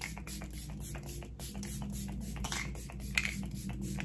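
Repeated quick hisses of a fine-mist pump spray bottle of setting spray, several a second, over soft background music.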